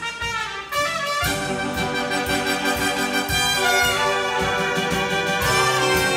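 Instrumental break in a 1940s-style song: brass-led swing band music with a steady beat, becoming fuller about a second in.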